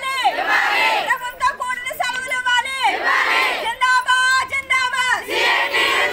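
A group of women protesters chant slogans in call-and-response. One woman shouts each line, and the crowd shouts back in unison, back and forth every second or two.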